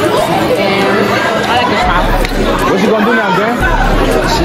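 Many voices chattering and talking over one another in a crowded school cafeteria, a loud, steady babble in which no single speaker stands out.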